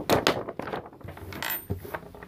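A sheet of paper rustling as it is lifted off a desk, with a few light clicks and taps of small craft items being moved: a couple near the start and more about one and a half seconds in.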